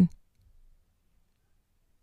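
The last word of speech ends in the first moment, then near silence: a dead gap between spoken segments.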